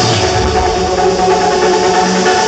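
Loud electronic dance music played by a club DJ: the heavy bass falls away at the start and held synth chords carry on.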